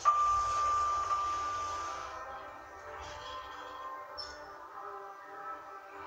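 Passenger lift standing at a floor: a single steady electronic tone lasts about two seconds over a rushing hiss, then gives way to a faint hum of several steady tones layered together.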